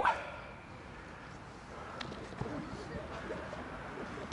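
Faint, distant shouts and calls from players running a drill, over low outdoor background noise, with a single sharp click about two seconds in.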